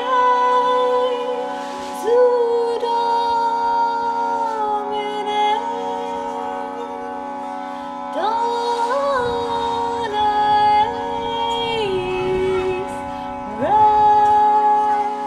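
A woman singing long, wordless held notes that slide up into pitch at each new phrase, over the steady drone of a tanpura and a harmonium.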